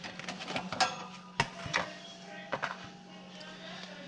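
Several sharp clinks and knocks of a spatula and a bowl during the first three seconds, over a steady low hum.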